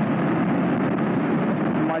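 Honda CB400SS single-cylinder four-stroke engine running steadily as the motorcycle rides along, mixed with wind and road noise.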